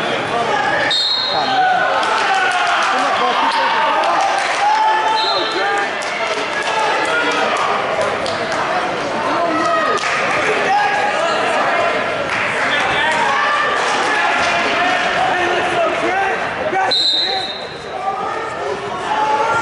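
Many people talking at once in a large gym, echoing, with scattered sharp thuds and knocks. Three short high-pitched chirps stand out: about a second in, about five seconds in, and near the end.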